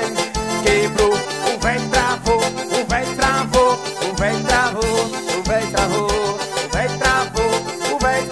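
Brazilian band music in an instrumental passage: a steady kick-drum beat and bass under a wavering lead melody.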